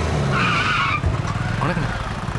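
A vehicle's engine running, with a brief tyre screech about half a second in, then voices near the end.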